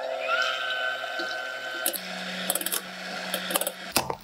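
Electric hand mixer whipping heavy cream in a glass bowl: a steady motor whine that rises a little in pitch as it comes up to speed at the start, then changes tone about halfway through, with light clicks of the beaters in the bowl near the end.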